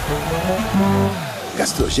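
Advert soundtrack: light background music with guitar under a cartoon voice giving a drawn-out, falling "hum". An announcer starts speaking near the end.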